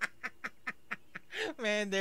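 A man laughing in quick, breathy pulses, about four a second, with his hand over his mouth. From about a second and a half in, a voice from the anime soundtrack comes in with long, drawn-out syllables.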